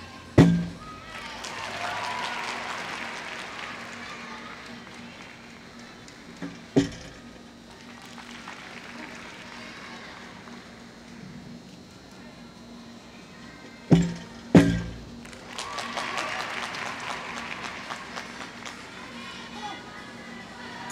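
A gymnast's feet landing on a balance beam: a sharp thud about half a second in as a flip comes down, another about seven seconds in, and two quick thuds near the fourteen-second mark. Crowd noise swells after the first and the last landings.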